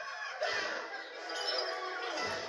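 Animated film trailer soundtrack played through a television: short, excited high vocal cries and squeals over music, with a laugh near the end.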